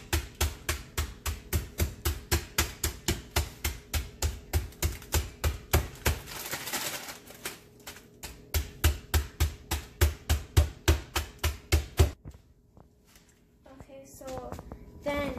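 A child's hand pounding raw chicken breast inside a plastic zip bag on a granite countertop to flatten it thin: quick thumps at about four a second. The pounding pauses briefly about six seconds in, resumes, and stops near the end.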